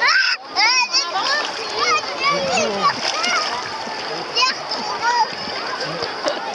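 Many bathers' voices and children's high calls overlap, over a steady splashing of water in the shallows.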